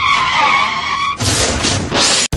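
Tyres screeching in a skid, a wavering high squeal. A little over a second in it gives way to a loud, rough scraping rush as the motorcycle goes down in a crash.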